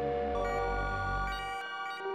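VCV Rack software modular synthesizer patch playing a sustained electronic drone of several steady tones. About a third of a second in, higher tones join, and the low bass drops out near the end.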